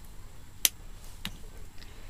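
Two small clicks from a plastic lipstick tube being handled: a sharp one a little over half a second in, then a fainter one about half a second later.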